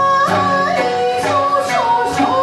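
Live folk-style band music: female voices sing a held, gliding melody over strummed acoustic guitar and plucked small stringed instruments.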